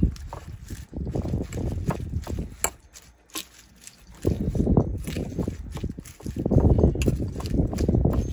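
A fork tossing dressed lettuce in a bowl: wet leaves rustle and crunch, and the fork clicks against the bowl. It comes in two spells, with a short lull about three seconds in.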